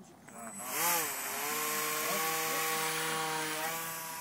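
RC model plane's motor and propeller running at full throttle as the plane is hand-launched and flies off: a brief rise and fall in pitch about a second in, then a steady buzzing whine with a rushing hiss, easing slightly near the end as the plane moves away.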